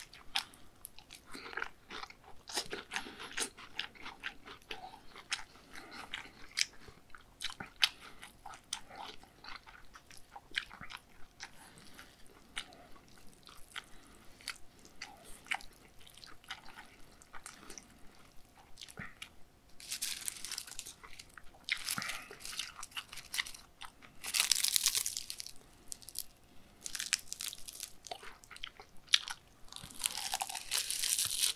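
Close-miked eating of raw beef bibimmyeon: wet chewing with many crisp crunches and clicks of biting. From about two-thirds in, several short crinkling bursts of dried seaweed sheets being handled and bitten.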